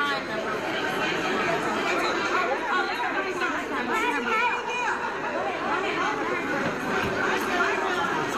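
Several people talking over one another at the same time, a steady hubbub of overlapping voices with no single voice standing out.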